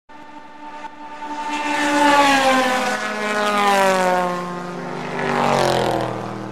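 A flyby sound effect opening a DJ jingle. A drone with many overtones falls steadily in pitch over about six seconds, growing louder after the first second or so and easing off near the end, much like an aircraft passing overhead.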